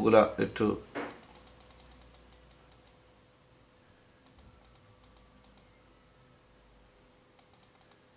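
Light, rapid clicking of computer keys in three short runs, about eight clicks a second, while the red annotation marks on the on-screen page are cleared.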